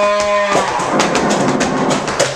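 Live trumpet and percussion playing together: a held trumpet note ends about half a second in, against a rapid scatter of sharp drum and percussion strikes.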